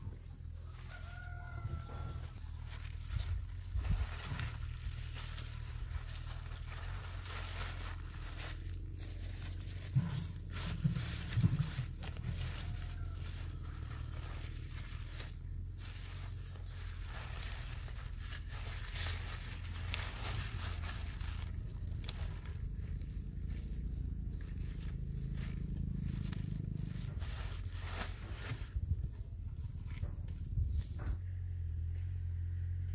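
Crackling and rustling of bunched leafy greens being sorted and tied on a woven plastic sack, with a few louder knocks about ten seconds in, over a steady low rumble. A rooster crows faintly about a second in.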